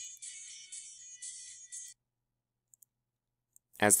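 Recorded place-value song playing back thin and tinny, with no low end and a steady beat, cutting off about halfway through. A couple of faint clicks follow in the quiet before a man starts talking at the very end.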